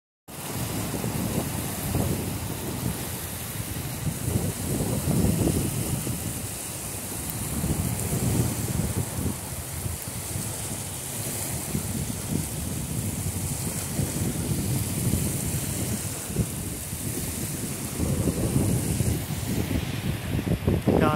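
Wind buffeting the microphone in uneven gusts, over a steady hiss.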